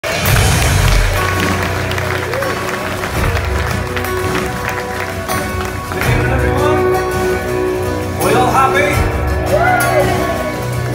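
Live band playing sustained chords over a steady low pulse, with audience clapping and voices over the music; a voice rises above it in the last two seconds.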